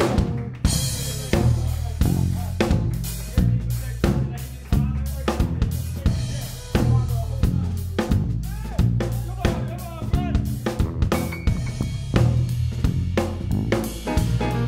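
Drum kit and electric bass playing a groove together: a steady beat of drum hits over a stepping bass line, with some sliding notes.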